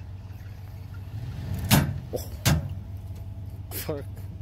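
Pickup truck engine running under load as a stuck truck is pulled with a tow strap through mud, the hum swelling in the middle. Two loud sharp bangs cut through it, about a second and a half in and again about a second later.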